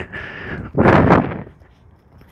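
A loud rush of air noise on the microphone, about half a second long, about a second in.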